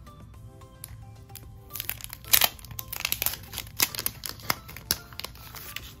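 Crinkling and rustling of sticker packaging being handled: a run of sharp crackles through the middle seconds, loudest a little over two seconds in, over soft background music.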